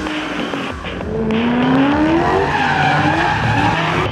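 Drift car sliding sideways with its tyres squealing, its engine revving in a pitch that climbs steadily over about a second and a half.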